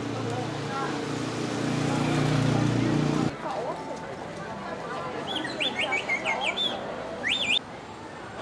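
Street ambience with people talking. A low engine hum runs through the first three seconds and stops abruptly. Later a bird chirps repeatedly in quick high notes.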